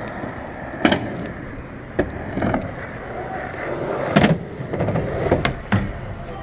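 Skateboard wheels rolling over concrete with a steady rumble, broken by several sharp clacks of boards striking the ground, about one every one to two seconds.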